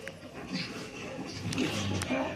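A car engine running, with faint, muffled voices over it; the engine's low rumble grows toward the end, and there is a sharp click about one and a half seconds in.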